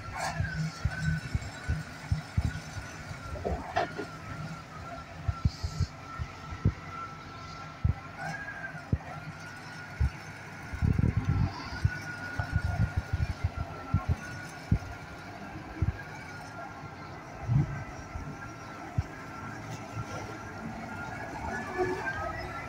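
Ural-4320 six-wheel army truck's diesel engine running as the truck is driven off its parking spot. A steady high tone runs throughout, with irregular low thumps.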